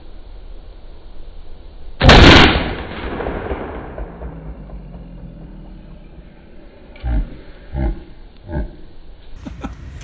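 A single 12-gauge Remington 870 pump shotgun shot about two seconds in, its blast ringing in an indoor range and dying away over a couple of seconds. Three softer thumps follow near the end.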